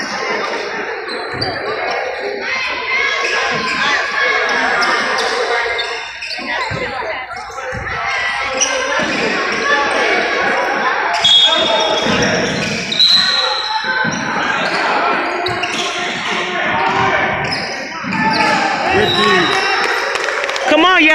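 A basketball bouncing on a hardwood gym floor during play, with indistinct voices of players and spectators echoing around a large gymnasium.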